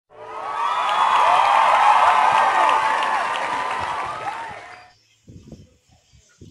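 A crowd cheering and shouting, many high voices rising and falling together, which swells up and then cuts off about five seconds in; a few faint knocks follow.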